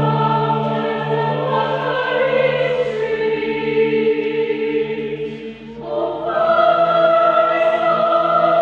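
Music in which a choir sings long held chords. The sound dips briefly about five and a half seconds in, and a new, brighter chord comes in just after.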